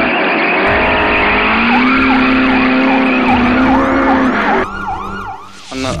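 City traffic noise with an emergency-vehicle siren that sweeps rapidly up and down in pitch from about two seconds in, dying away shortly before the end.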